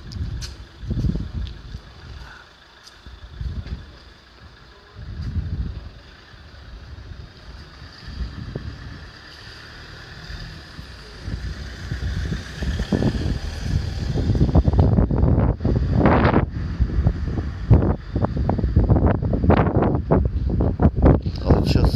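Wind buffeting the microphone in irregular low rumbling gusts over outdoor street ambience, quieter for the first few seconds and growing louder and more continuous in the second half.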